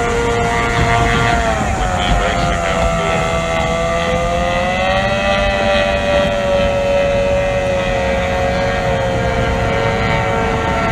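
Racing outboard hydroplane engines running at high revs, a steady high whine that dips in pitch about a second and a half in and slowly climbs back, over a low rumbling noise.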